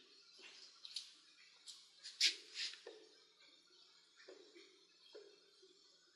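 Faint handling noise from hexacopter frame parts and wiring being handled: scattered light clicks, taps and rustles, with one sharper click a little over two seconds in.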